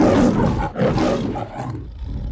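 The MGM logo's lion roaring: two roars, with a brief break between them about three-quarters of a second in, the second trailing off into a quieter growl.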